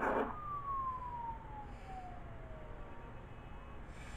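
A siren winding down: one long tone that falls steadily in pitch over about two and a half seconds, after a short burst of noise at the very beginning.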